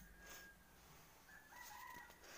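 Near silence, with a faint, drawn-out high call in the distance that starts about a second and a half in.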